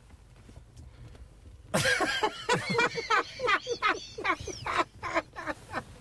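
A man's laughter bursting out a couple of seconds in, a fast run of short 'ha' pulses that keeps going, over a low steady rumble.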